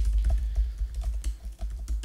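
Typing on a computer keyboard: a quick, irregular run of keystroke clicks with dull thuds as the keys bottom out.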